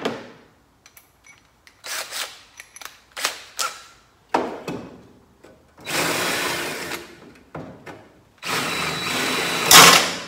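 Cordless drill boring out spot welds in a generator's sheet-metal recoil-starter housing, enlarging the holes around the welds so the plate will come free. It runs in two bursts of about a second and a half each in the second half, after a few shorter knocks and brief runs.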